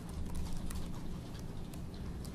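Typing on a computer keyboard: a run of light, irregular key clicks over a faint low hum.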